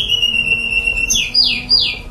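A small songbird singing: a long whistled note that slides slightly down, then three quick downward-sweeping whistles.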